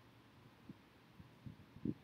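Faint low hum of room tone with a few soft, dull low thumps, the loudest near the end.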